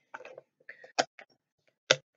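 A small container with its lid being handled and set down: a few light clicks and taps, the sharpest about a second in and another just before the end.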